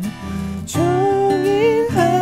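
Playback of a dry, unprocessed recording made through a MOTU M4 audio interface: strummed guitar under a sung vocal. The voice comes in about a third of the way in and holds a long note with slight vibrato.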